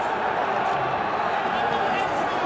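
Football crowd in the stadium stands chanting, many voices together in a steady, unbroken mass.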